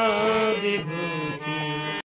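Devotional chant-like singing, a wavering melodic voice over a steady held accompaniment, cut off abruptly at the end.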